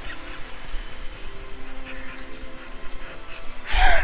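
A man crying, with quiet sobbing breaths and one loud, sharp sob near the end, over soft background music with sustained notes.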